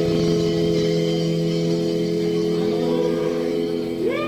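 Electric guitar through an amplifier holding one sustained chord that rings steadily, with no drumbeat, in a live punk club recording.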